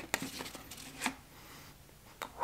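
Faint handling sounds of a Pringles can being opened: a small click as the plastic lid comes off, then about a second in another short click and rustle as a chip is taken out.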